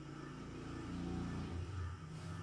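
A low engine rumble that swells over about a second and a half and then drops away, over a faint steady hum.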